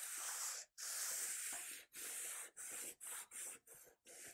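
Scouring sponge loaded with Autosol metal polish rubbed back and forth along a steel sword blade lying flat on a table, scrubbing off surface rust and dirt. About seven scrubbing strokes: long at first, then shorter and quicker toward the end.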